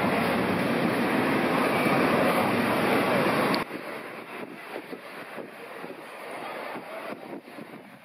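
Loud, steady street traffic noise that cuts off abruptly about three and a half seconds in, giving way to much quieter street ambience with scattered faint clicks and knocks.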